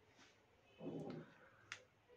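Near silence in a small room, broken by two faint sharp clicks about three-quarters of a second apart, with a soft low sound just before the first.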